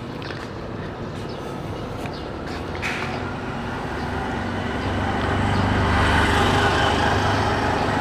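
A motor vehicle on the street approaching and passing close by, its engine and road noise building steadily and loudest about six to seven seconds in.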